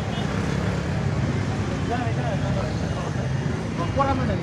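Steady street traffic noise from idling and passing vehicle engines, with indistinct voices of people talking.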